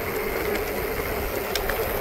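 Mountain bike rolling downhill on a dirt forest road: a steady rush of wind on the handlebar camera's microphone over the rumble of the tyres, with a few faint clicks of gravel and bike rattle.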